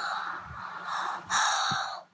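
A young girl gasping in surprise: breathy gasps, the longest and loudest a little past halfway.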